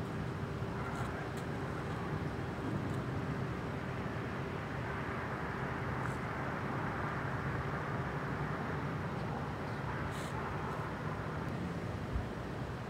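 Steady low hum of idling vehicle engines with street noise, a faint constant tone running under it.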